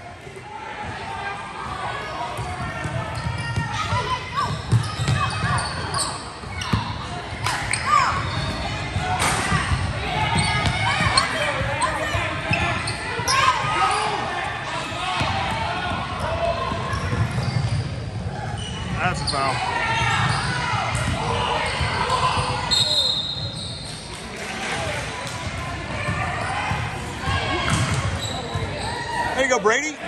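A basketball dribbled and bouncing on a hardwood gym floor during a game, with scattered impacts and indistinct voices of players and spectators echoing in the large hall.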